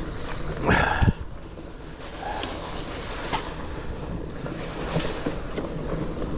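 Mountain bike rolling along a leaf-covered dirt trail: steady tyre and rattle noise with wind on the microphone. A louder rush ending in a sharp knock about a second in, with a few small clicks later.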